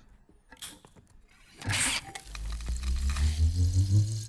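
Cartoon sound effect of a wall-mounted dispenser filling a canister: a short hiss, then a low machine hum that slowly rises in pitch.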